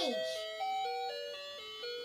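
Light-up toy capsule playing its built-in electronic melody: a simple chime-like tune of single notes stepping up and down, a few notes a second.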